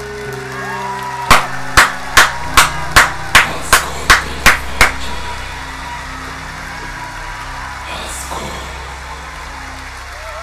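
A person clapping hands ten times, evenly, about three claps a second, loud and close, over concert music that carries on with a held note.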